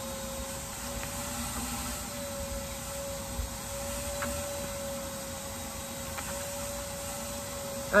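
A steady mechanical hum in the background, holding one slightly wavering pitch.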